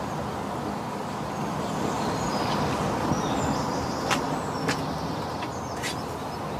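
Outdoor street ambience: a steady rumble of traffic, with a few sharp clicks in the second half.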